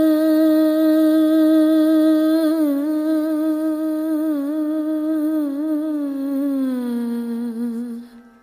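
A solo voice holds one long note in an Indian classical style, wavering in small ornaments around the pitch. It slides down to a lower note near the end and then stops.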